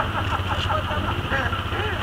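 ATV engine idling steadily with a low, even hum, with voices talking faintly over it.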